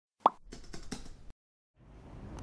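Intro sound effect: one short, sharp pop, followed by a quick run of light clicks lasting under a second.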